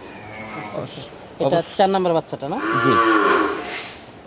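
Red zebu cattle mooing, with one long moo, the loudest sound, from a little past halfway.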